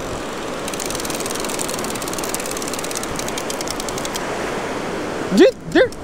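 A fishing reel's clicker ticks rapidly for about four seconds as line is pulled off it by a bait being run out, over a steady wash of surf. A short vocal sound comes near the end.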